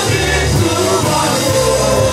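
Church worship music: a band with a steady bass line under sustained singing voices.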